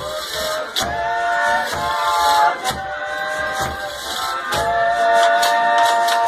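Folia de Reis music: men's voices holding long notes in harmony over acoustic guitars and accordion, with percussion strokes about once a second.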